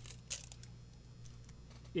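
A few faint metallic clicks and a light rattle in the first half-second as a steel tape measure blade is pulled out and handled against the pivot, then quiet with a steady low hum.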